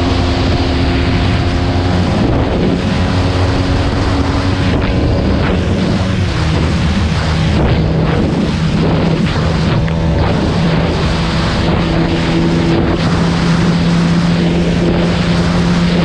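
Bajaj Pulsar NS200's single-cylinder engine running at high revs under full throttle on a top-speed run, with a steady engine note over heavy wind rush on the microphone.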